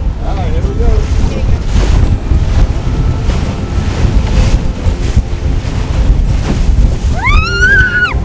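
Strong wind buffeting the microphone on the bow of a fishing boat under way, with the rush of water along the hull underneath.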